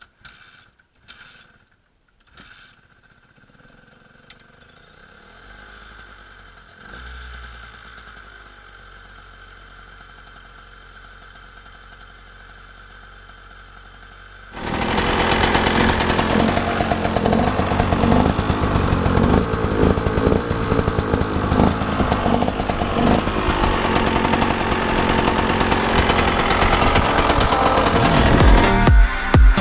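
A 2008 KTM EXC 125 two-stroke engine with a motocross crankshaft being kick-started for its first start: a few knocks in the first couple of seconds, then about halfway through it fires and keeps running loudly with a fast, ragged beat, growing slightly louder toward the end.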